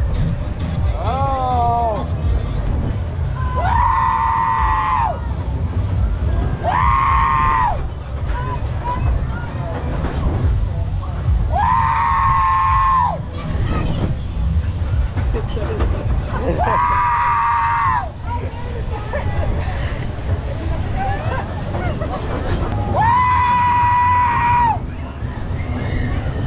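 Riders on a spinning surf-style fair ride screaming in about six long held yells, over a steady low rumble of wind buffeting an on-ride action camera's microphone.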